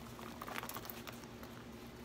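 Faint rustling and a few light clicks as a zipped, packed Louis Vuitton Neverfull pouch in checkered coated canvas is handled and turned over in the hands, its contents shifting inside.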